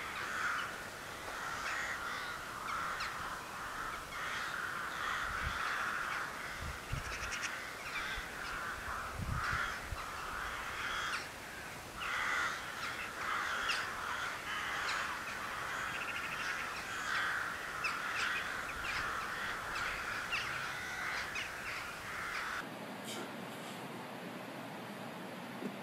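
Harsh animal calls repeated over and over, sounding like cawing, until they stop abruptly near the end, leaving a quieter steady hum.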